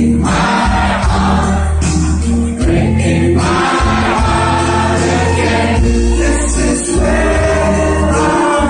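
A live pop-rock band playing a song, with several voices singing over a heavy, booming bass line.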